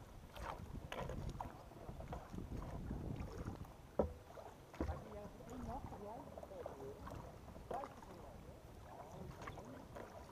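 Kayak paddle strokes in calm water: uneven splashing and dripping as the blades dip and lift, with a couple of sharp knocks about four and five seconds in.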